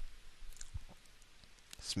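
A few faint, scattered clicks and taps of a stylus on a graphics tablet while a word is handwritten.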